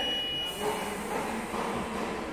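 A steady, high electronic beep tone that stops about half a second in, followed by background noise.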